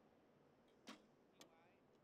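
Recurve bow shot: the string is released with a sharp snap about a second in, followed by a fainter click half a second later.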